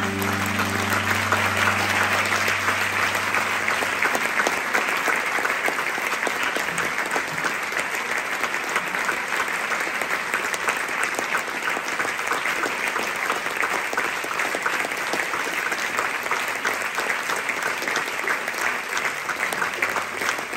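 A large audience applauding at the end of a song, in a dense, steady clapping. The band's last low note rings on under the clapping for the first few seconds and fades out.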